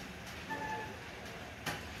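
Quiet room background with faint distant voices. A short, steady beep-like tone comes about half a second in, and a single sharp click comes near the end.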